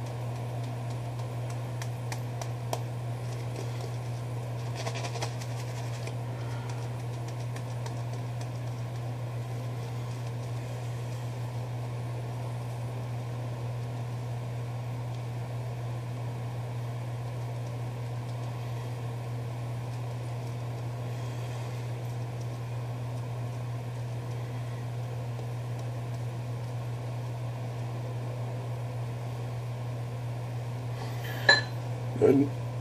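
Thater two-band badger shaving brush working lather over a bearded face and neck, a faint swishing, over a steady low hum.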